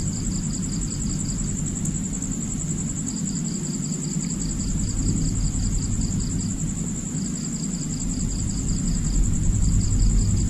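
Crickets chirping: a steady high trill runs throughout, and a lower pulsed chirp comes in trains of a few seconds with short breaks. A steady low hum lies underneath.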